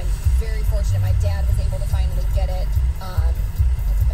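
Muffled voice from the car radio over the low, steady rumble of the car sitting in traffic.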